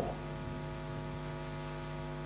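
Steady electrical mains hum in the recording's sound chain: an unchanging low drone with a stack of even overtones.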